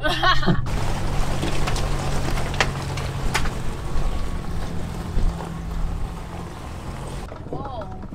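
Toyota FJ Cruiser's 4.0-litre V6 running, a steady low hum under a broad hiss, heard from a camera mounted on the outside of the body, with a few sharp clicks scattered through it. A short laugh at the very start.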